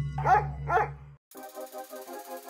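Two short dog barks about half a second apart over a low droning music bed. The drone cuts off a little past one second, and soft electronic keyboard music with a pulsing rhythm starts.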